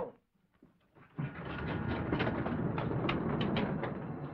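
Mechanical rattling and clattering of an amusement-ride car moving off along its track. It starts about a second in and carries on steadily, with a few sharper clicks.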